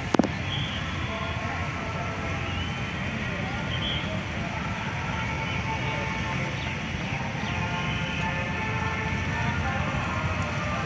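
Outdoor ambience: a steady low rumble with distant people's voices talking faintly, and one sharp click just after the start.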